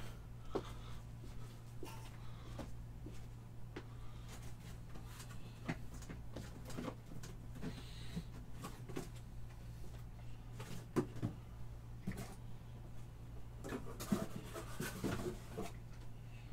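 Quiet room with a steady low electrical hum and scattered faint knocks and clicks of objects being handled off-camera, a little busier near the end.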